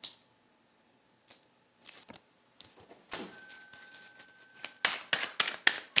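Tarot cards being handled and laid on a glass tabletop: scattered clicks and taps that turn into a quick run of clicks near the end.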